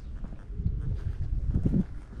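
Footsteps on stone paving, a steady walking pace, under a low rumble that grows louder in the second half.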